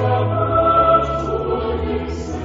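Choir singing slow, held notes over a steady low tone.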